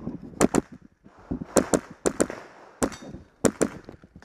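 Rapid shots from a .22 rimfire semi-automatic rifle, about eight cracks fired mostly in quick pairs.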